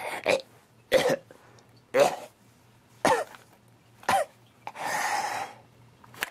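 A man's voice in a slow, drawn-out laugh: four separate bursts about a second apart, each falling in pitch, then a longer breathy rasp near the end.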